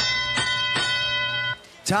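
Arena sound system's chime marking the start of the driver-controlled period of a FIRST Robotics match. It is a ringing tone struck three times in quick succession, held for about a second and a half, then cut off abruptly.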